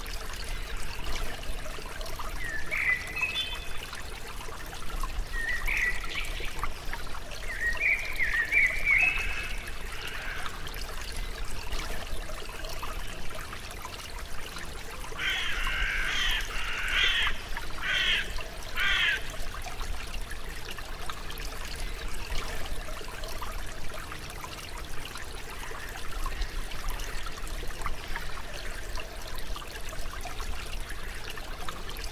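Water trickling steadily, with birds calling over it: a few short zigzag chirps in the first third and a quick run of about five calls just past the middle.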